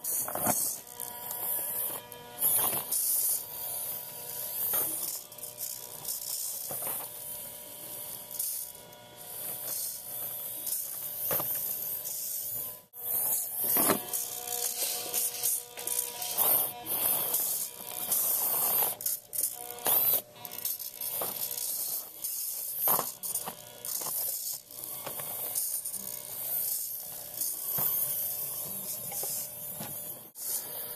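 Redcat Racing 1/24 Sumo micro crawler's small electric motor and gear train buzzing and whining in irregular stop-start bursts as it is throttled over foam rock, with a steady fixed-pitch whine underneath.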